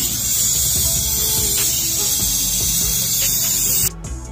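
Compressed air hissing through a coolant vacuum-fill tool's venturi as it pulls a vacuum on the cooling system: a loud, steady hiss that cuts off suddenly near the end.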